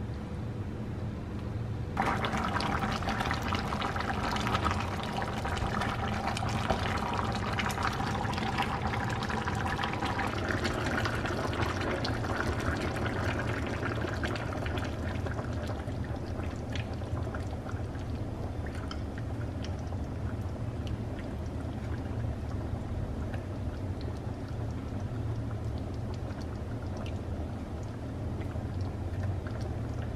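Thick mutton curry bubbling as it simmers in a pan, a dense crackle of popping bubbles. It starts abruptly about two seconds in, is loudest for the next several seconds, then eases a little and carries on.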